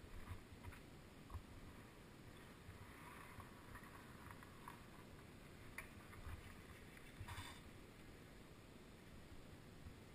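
Near silence: a faint low rumble with a few soft knocks, the loudest a little past the middle.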